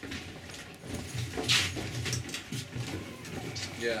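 Low, indistinct chatter of people in a small room, with a short hiss about a second and a half in.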